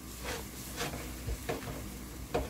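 Paper towel rubbed around the inside of a new stainless steel frying pan in a few short wiping strokes, scrubbing off the leftover factory polishing residue.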